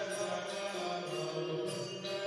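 Devotional music: a mantra chanted by voices over a steady held drone tone.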